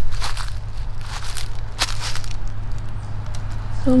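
Footsteps crunching through dry fallen leaves and pine needles, a few steps in the first two seconds, over a steady low rumble.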